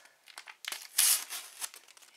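A Panini sticker packet being torn open and its wrapper crinkled by hand, a scatter of crackles with the loudest rip about a second in.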